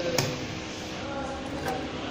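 A single short metallic knock as stainless steel test cups and their lid are handled on a steel bench, over a steady background hum.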